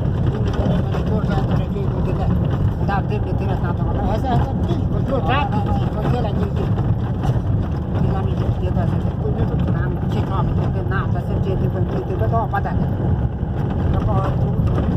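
Steady low rumble of a vehicle driving over a rough, snow-covered dirt track, heard from inside the cabin.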